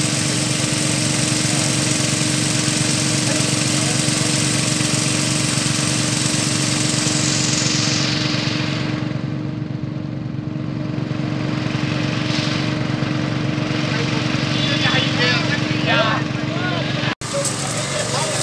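A small engine running steadily at an even pitch, with the hiss of artificial rain spray falling on wet pavement. The hiss fades back about halfway through while the engine runs on.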